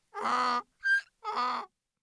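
A mule braying hee-haw: short high squeaks alternate with longer low honks, twice over, then it stops.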